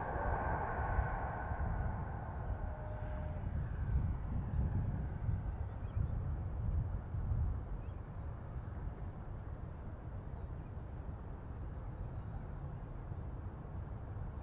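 Low, uneven rumble of wind on the microphone, with the faint high whine of a radio-controlled model jet's ducted fan fading away over the first few seconds as it climbs out.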